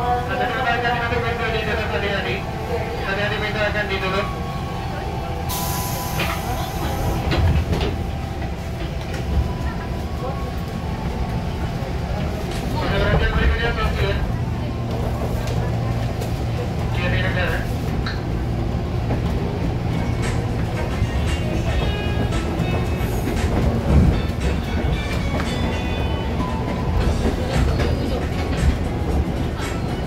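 Electric commuter train at a station stop with voices in the carriage, a burst of hiss about six seconds in as the doors close, then the train pulling away, its low motor hum and wheel rumble building under the carriage.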